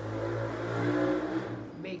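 A motor vehicle passing, its engine noise swelling to a peak about a second in and then fading away.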